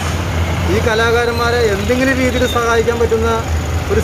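A man's voice singing a song in long held notes, a phrase starting about a second in and breaking off near the end, over a steady low rumble.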